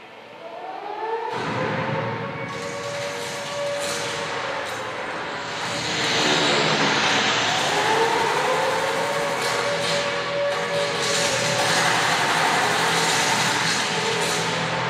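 Film-soundtrack sound effects over loud rushing noise: a siren wails twice, its pitch rising, holding and then falling.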